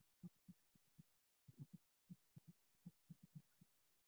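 Near silence with a dozen or so faint, short, dull taps at uneven spacing: chalk strokes on a blackboard.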